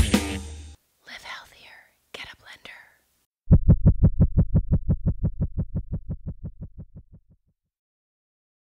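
Background music ends about a second in. A short whispered voice follows, then a rapid run of evenly spaced low pulses, about nine a second, that fades away over about four seconds.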